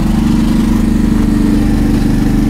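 A motor running steadily, a low even hum with a fast regular pulse.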